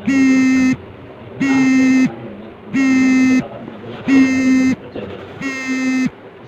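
A loud electronic buzzer-like beep on one low, steady pitch, sounding five times in even pulses about every 1.3 seconds, with faint muffled talk underneath.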